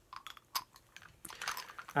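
Faint small clicks and rustling as a Teletubbies Po plush toy with sleepy eyes is tilted, its eyelids opening and closing, along with handling of the soft toy.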